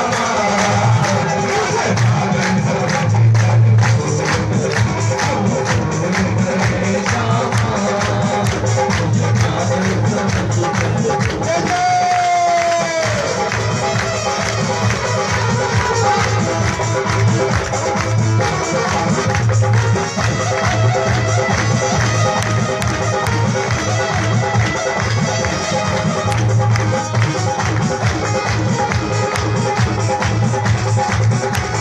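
Loud amplified live bhajan music with a fast, steady beat, percussion and heavy bass. There is a short falling glide in pitch about twelve seconds in.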